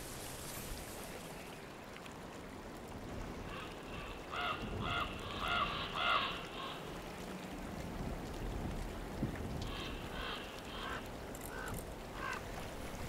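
A large bird calling in two runs of short, harsh calls: about six in quick succession a few seconds in, then about five more near the end, over a steady outdoor background hiss.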